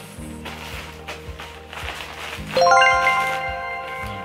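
Background music with a steady beat, and about two and a half seconds in a bright chime sound effect: several ringing notes struck in quick rising succession that ring out for about a second.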